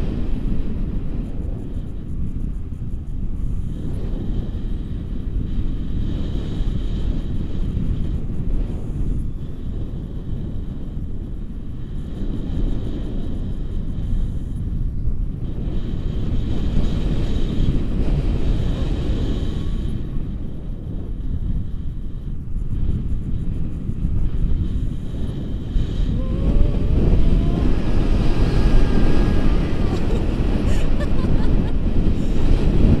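Wind buffeting the camera's microphone in flight on a tandem paraglider: a steady, low rumbling rush. Near the end a faint rising tone sounds through it.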